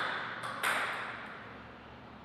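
A table tennis ball being bounced by the server before serving. A single sharp bounce lands about half a second in and rings briefly, with the ring of the bounce before it still dying away at the start.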